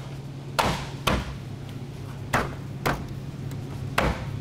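Hand smacks on a truck's chrome grille, four sharp knocks in two quick pairs, as its retaining clips snap into place.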